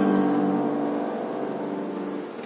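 Upright piano's final chord ringing out, its steady notes fading slowly away.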